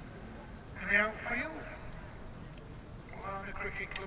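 Indistinct speech: a short phrase about a second in and more talk starting near the end, over a steady background hiss.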